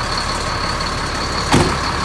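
Ford F650 dump truck's engine idling steadily, heard from inside the cab, with a thin high steady whine over the rumble. A single sharp knock comes about one and a half seconds in.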